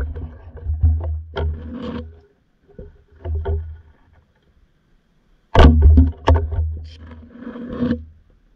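Muffled bumps, clicks and rumbling water noise picked up by an underwater camera, in irregular bursts with a silent gap of about a second and a half around the middle.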